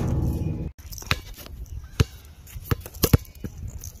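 A basketball bouncing on an outdoor court after a missed shot: a handful of separate thuds, spaced unevenly and coming closer together near the end. It follows a short low rumble that cuts off abruptly in the first second.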